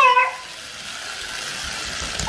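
A child's high-pitched voice breaks off at the start. It is followed by a steady high whir from a small remote-control toy truck's electric motor and wheels running on a hardwood floor, which grows slightly louder.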